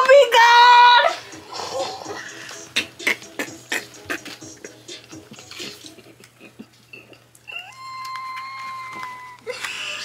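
A woman's voice letting out a held, high-pitched squeal for about a second, a reaction to a hot-flavoured candy, followed by small clicks and rustles. A steady high tone sounds for about two seconds near the end.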